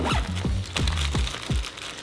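Background music with handling noise on top: several short crunching clicks and plastic crinkling from a polyester backpack pocket being opened and plastic bait packs being handled.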